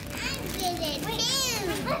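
Young children's voices: chatter without clear words and a high-pitched vocal sound that rises and falls about a second in.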